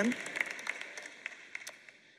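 Scattered applause from a large audience, dying away.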